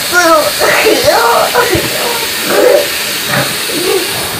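A person's wordless vocalizing in short bursts over a faucet running into a bathroom sink.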